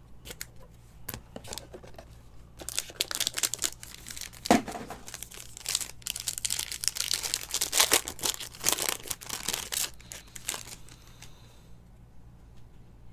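Clear plastic wrapping around trading cards being torn open and crinkled by hand: a few light clicks, then about eight seconds of dense crackling and crinkling with sharp snaps, ending about a second before the end.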